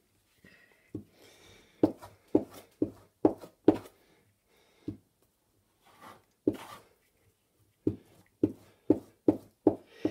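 Hands pressing and patting a glued paper sheet down onto a cutting mat: about a dozen short, soft thumps at irregular intervals, with a light paper rustle near the start.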